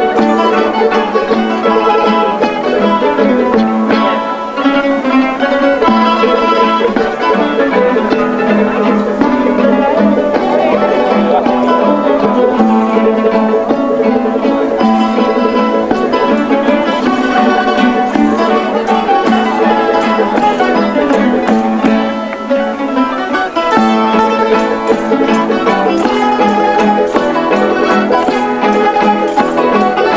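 A Canarian parranda, a folk string group, plays a continuous lively tune on strummed and plucked guitars and a laúd. The music dips briefly twice.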